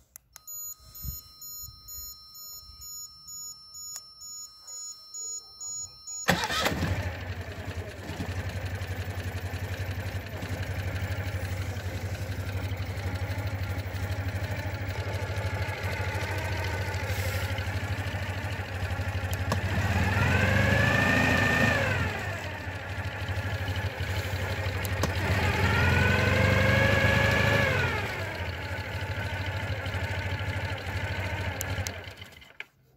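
Citroën 2CV's air-cooled flat-twin engine being started by remote control: the starter cranks in slow pulses for about six seconds under a thin steady high whine, then the engine catches and idles. It is revved twice, the pitch rising and falling, about two-thirds of the way through and again near the end.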